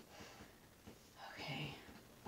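A woman whispering softly, with a short breathy voiced sound from about one to two seconds in, and faint light ticks earlier.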